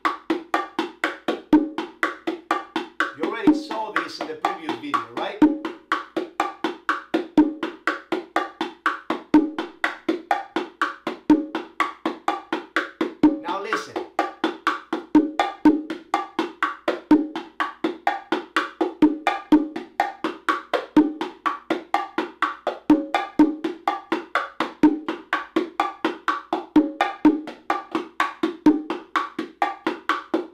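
Pair of bongos played with bare hands in the martillo ("hammer") groove: a fast, even stream of strokes with regularly recurring louder open tones, running on into variations of the pattern.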